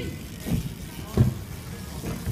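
BMX bike dropping in off the coping and rolling down a concrete ramp: a low tyre rumble with two dull thumps, about half a second and a second in.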